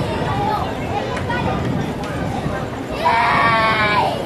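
A loud, drawn-out bleat-like call, about a second long, about three seconds in, over voices in the background.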